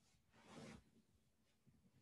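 Near silence: room tone, with one faint short hiss about half a second in.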